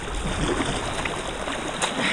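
Steady rush of moving river water around an inflatable kayak, with paddle strokes dipping and splashing, and a short knock near the end.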